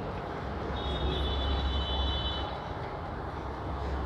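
Low steady background rumble that swells slightly in the middle, with a faint high steady whine lasting about two seconds from about a second in.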